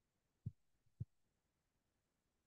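Two short, low thumps about half a second apart from a handheld microphone being handled and passed; otherwise near silence.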